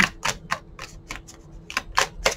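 A deck of tarot cards being shuffled by hand, the cards passed from one hand to the other in an irregular run of crisp clicks and snaps.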